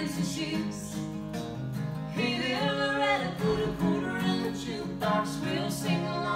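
Live country song: two acoustic guitars strummed together under singing, with sung phrases rising in pitch.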